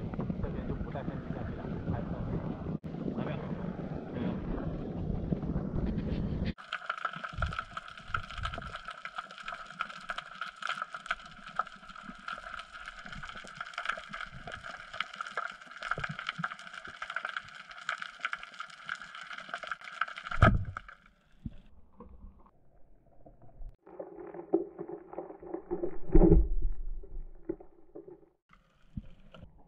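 Wind buffeting the microphone on a small boat, then underwater sound: a steady humming whine with faint ticks and a sharp knock about twenty seconds in. Near the end a loud thump comes as a rubber-band speargun is fired.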